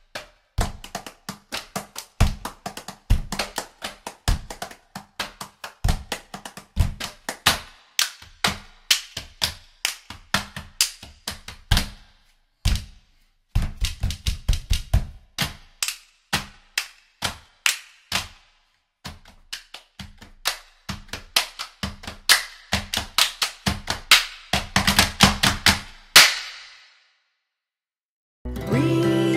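Hand claps and finger snaps played as quick rhythmic percussion patterns, with low drum beats under them. The strokes pause briefly about halfway through and again a little later, and stop shortly before the end.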